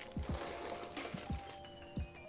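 Plastic bag wrapping a camera lens crinkling as it is lifted out of foam packing, with several short sharp handling clicks, over soft background music with steady tones.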